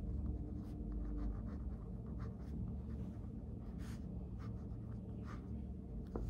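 Pen scratching on paper as someone writes by hand in a notebook: short, soft strokes at irregular moments over a low steady background hum.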